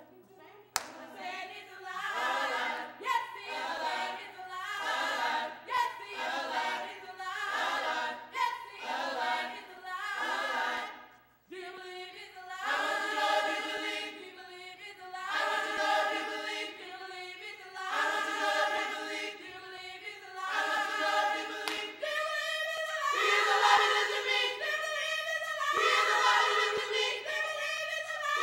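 Mixed-voice gospel choir singing a cappella in short repeated phrases, with a brief break part-way through and fuller, louder singing near the end. A single sharp click sounds just after the start.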